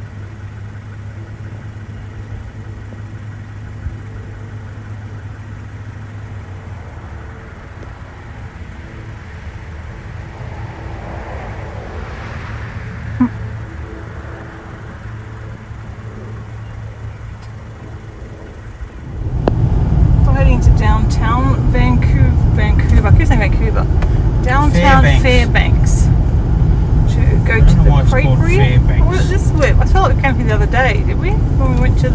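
A car engine idling with a steady low hum, a passing vehicle swelling and fading around the middle, and a single click a little later. About two-thirds of the way in, a much louder passage cuts in abruptly: a heavy low rumble under quickly bending voice-like sounds.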